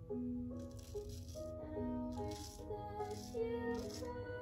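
Soft background music with slow held notes. Over it come short scratchy strokes, about one or two a second: a straight razor scraping stubble from the upper lip.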